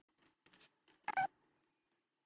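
Near silence with a few faint ticks, then one short, high-pitched beep-like tone about a second in.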